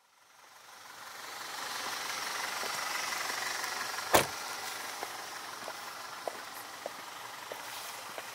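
Car noise rising in from silence, then a single loud thump of a car door shutting about halfway through, followed by high-heeled footsteps clicking at an even walking pace, about one step every half second.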